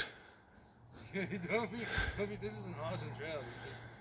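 A man's voice talking softly and indistinctly, starting about a second in and trailing off shortly before the end.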